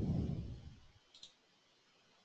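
A low muffled rumble that fades out about a second in, then a quick double click of a computer mouse button.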